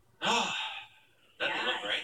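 A short breathy vocal reaction, sigh-like, lasting about half a second, followed shortly by talking; heard through a television's speaker.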